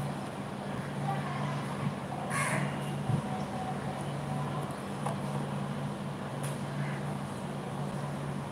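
A steady low hum, with a few short, faint noises above it, the clearest about two and a half seconds in.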